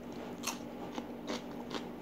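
Raw cucumber being bitten and chewed up close: about four crisp, sharp crunches, the loudest about half a second in.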